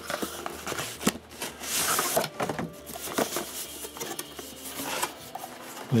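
Cardboard box parts and plastic packaging being handled as a box is unpacked: scattered taps, scrapes and rustling, with a longer rustle about two seconds in.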